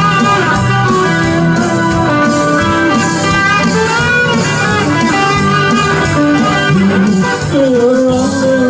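Live band playing an instrumental passage, electric guitar to the fore over bass and drums.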